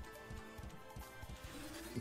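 Faint electronic game music and sound effects from the 5 Lions Megaways online slot as its reels spin and land, with soft steady tones and scattered light ticks.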